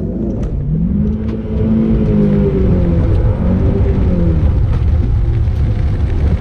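Audi S1's engine heard from inside the cabin, revving up about a second in, holding, then dropping away a few seconds later over a steady low rumble.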